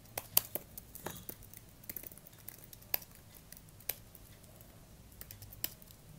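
Computer keyboard keys being typed: irregular keystroke clicks with short pauses, fewer clicks about four seconds in.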